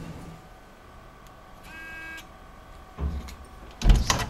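Hotel room door being opened: a short electronic beep from the door lock about halfway through, then a thump and a quick run of loud metallic clicks as the lever handle is worked and the latch releases near the end.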